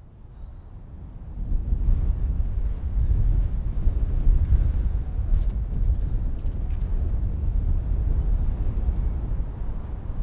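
Wind buffeting an outdoor microphone: a low, gusty rumble that fades in over the first second and a half and then carries on at a steady level.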